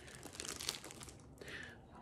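Plastic bread bags crinkling faintly as two loaves are handled and lifted up.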